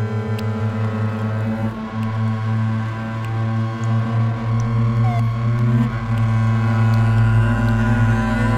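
Double bass bowed in long, low sustained tones, joined by electronic sound, with a fluttering pulse in the first couple of seconds. A deeper low drone swells in about halfway through.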